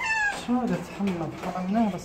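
A cat gives one short, high meow that falls in pitch at the very start, followed by a person's voice.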